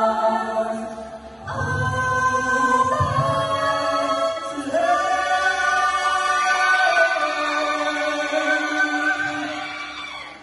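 A group of women singing together in harmony through microphones and a PA system, holding long notes. The singing dips briefly just over a second in, then carries on and fades near the end.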